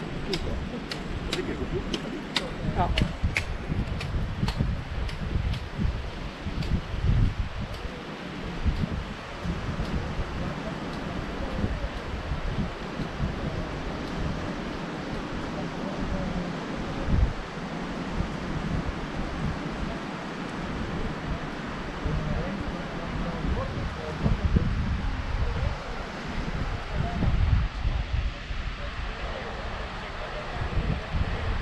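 Wind buffeting the camera microphone in uneven gusts, with a deep rumble throughout. For the first several seconds there is a run of sharp clicks, about two a second, which fade away.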